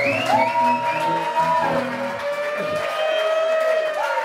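Two acoustic guitars playing live, with long held notes that slide up into pitch and hold for a second or more at a time.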